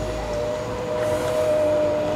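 Electric tailgate motor on an Ora Funky Cat humming steadily as the hatch lowers.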